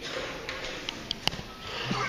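Hall background rustle with a few small clicks and taps as a band readies to play, and a brief murmur of a voice near the end.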